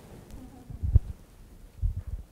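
Handheld microphone being passed and handled, giving low rumbling handling noise with two dull thumps, about a second in and again near the end.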